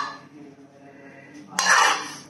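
Metal spoon scraping a steel frying pan as diced pancetta is scooped out onto a salad, one short scrape near the end over a faint steady hum.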